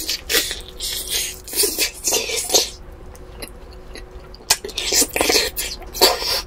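Close-miked biting and chewing of a grilled bone-in chicken piece: wet tearing and mouth noises in a run of bursts over the first couple of seconds and again about four and a half seconds in.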